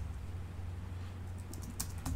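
Computer keyboard typing, a short run of faint key clicks with most of them in the second half, over a steady low hum.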